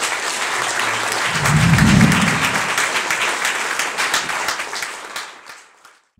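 Audience applause, a dense patter of many hands clapping with a brief low sound about two seconds in, dying away near the end.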